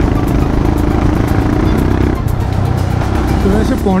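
Motorcycle engine running while riding along a town road, with road and wind noise; a steady hum carries on for about the first two seconds.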